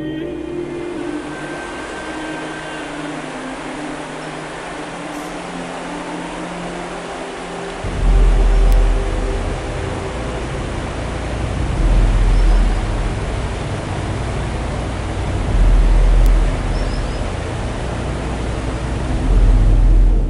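Rushing river water over stones, a steady even noise, with background music fading out in the first few seconds. From about eight seconds in, low gusty rumbles of wind on the microphone come and go several times over the water sound.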